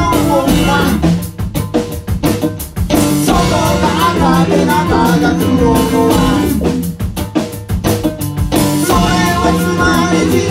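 A band playing live with a drum kit, bass drum and snare, under pitched instruments. About a second in, and again near seven seconds, the sound thins out briefly to mostly drum strokes before the full band comes back.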